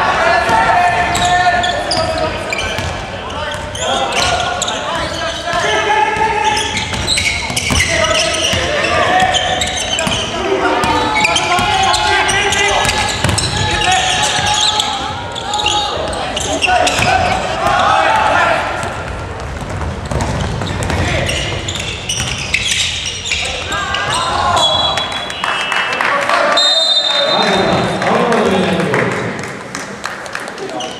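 Basketball game sounds in a gymnasium: the ball bouncing on the hardwood court and players' and bench voices shouting, echoing through the hall. A couple of short, high whistle blasts come near the end.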